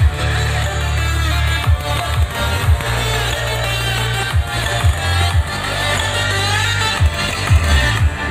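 Electronic dance music with a heavy bass line and repeated kick-drum hits, played loud through a Polytron tower speaker driven by a car audio head unit.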